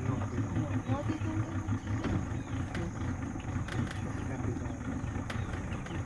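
A boat's engine running with a steady low hum.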